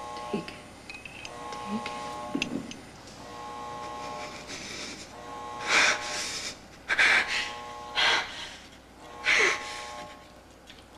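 An electronic alarm tone sounding in repeated pulses, roughly every second and a half to two seconds, as a hospital evacuation alarm. In the second half come four short, loud bursts of noise about a second apart.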